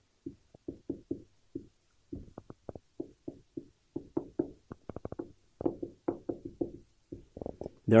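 Dry-erase marker writing on a whiteboard: a run of short, irregular squeaks and taps, one for each pen stroke, as several words are written.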